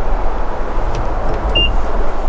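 Steady outdoor background noise with a deep rumble, and a single short high beep about one and a half seconds in.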